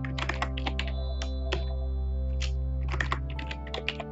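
Computer keyboard keys clicking in quick irregular clusters, over background music that holds steady sustained chords.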